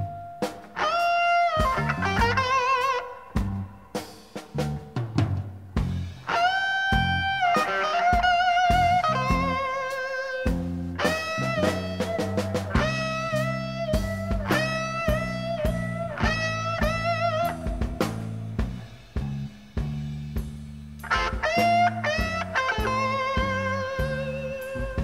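Blues-rock trio playing live: an electric guitar solo of notes bent up and held with a wide vibrato, in short repeated phrases, over bass guitar and drums. The guitar drops out for a moment around 10 s and near 19–21 s, leaving bass and drums.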